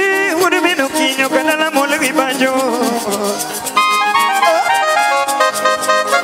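Live ohangla band music: a singer's wavering line over fast, steady ticking percussion, with held keyboard-like chords coming in about four seconds in.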